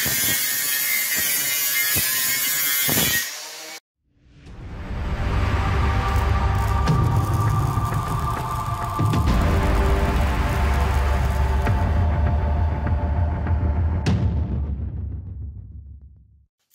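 A cordless angle grinder back-gouging a weld joint on a metal ring, its pitch wavering as the disc bites; it cuts off after about three seconds. After a moment of silence an intro music sting swells in with a deep rumble underneath and fades out near the end.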